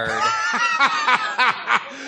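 A man laughing in short, rhythmic chuckles, about four a second.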